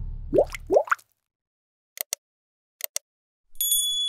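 Subscribe-button animation sound effects: the tail of the intro music fades out, two quick rising bloops follow, then two pairs of sharp mouse clicks, and a ringing bell ding starts near the end.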